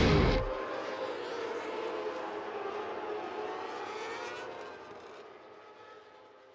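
Racing motorcycle engines whining at the circuit, a steady pitched note that glides slowly up and down and fades out gradually toward the end. Loud rock music cuts off about half a second in.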